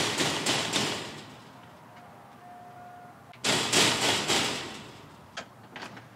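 Knocking on a locked steel security screen door, in two runs of several knocks: one at the start and another about three and a half seconds in.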